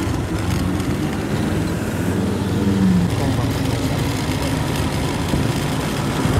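Motorcycle engine running steadily while riding slowly in traffic, with road noise and the surrounding traffic mixed in.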